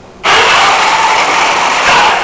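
Electric drive motors and gearboxes of an FRC robot chassis running at full power as it drives across carpet on roller wheels. A loud, steady mechanical noise that starts abruptly about a quarter second in and cuts off right at the end.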